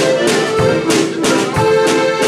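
Diatonic button accordions (heligonkas) playing a tune together, with a drum kit keeping a regular beat under the held reedy chords.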